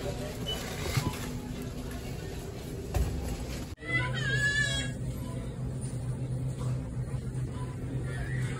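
Store background sound around a shopping cart being pushed and loaded, with a couple of knocks about one and three seconds in. About four seconds in, a short high wavering cry or squeak rises over the steady hum.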